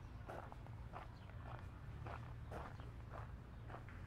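Footsteps crunching on a gravel path, about two steps a second, over a steady low rumble.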